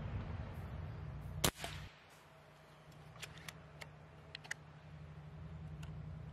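A single shot from a Canadian-spec sub-500 fps .22 Reximex Throne Gen2 pre-charged pneumatic air rifle about one and a half seconds in: one sharp crack with a short ring. A few light clicks follow a couple of seconds later.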